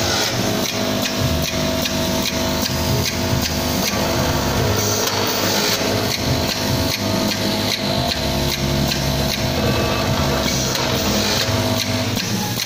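Drinking-straw counting and packing machine running: a steady mechanical hum with dense, irregular clicking and rattling as straws travel down the feed chute and drop into the hopper.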